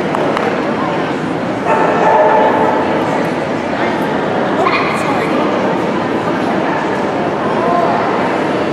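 A dog whining, with pitched cries that rise and fall at a few points, over the background chatter of people talking.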